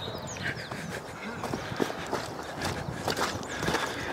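Soft, irregular footfalls and rustling through field grass, with a few faint high bird chirps near the start.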